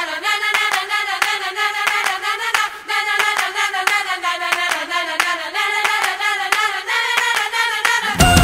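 A group of girls chanting a cheer in unison, with a steady rhythm of hand claps under the voices.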